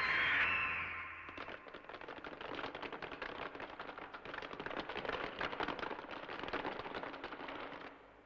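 Animated-show sound effects: a sci-fi iris door hissing open, then a dense, irregular clatter of rapid clicks that swells and fades and cuts off suddenly near the end.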